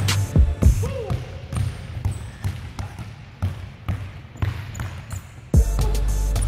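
Basketballs being dribbled, irregular bounces heard plainly with the music dropped out. Background music with a heavy bass comes back in near the end.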